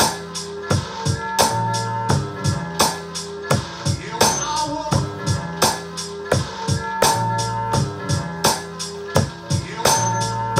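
A hip-hop beat from an Akai MPC One: chopped sample slices triggered from the pads over programmed drums. There are steady drum hits with pitched bass and melody notes between them.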